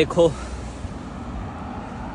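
Steady city street traffic noise: cars running along the road, an even low rumble with no single vehicle standing out.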